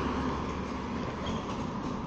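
A road vehicle passing close by: a steady rumble with tyre noise that slowly fades as it moves away.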